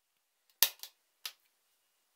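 Three sharp clicks in quick succession, the first the loudest, made by hands handling something right at the microphone.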